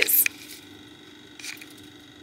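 A woman's voice ends a spoken question on a hissing 's'. Then comes a quiet stretch with a steady low hum, with a faint brief sound about one and a half seconds in.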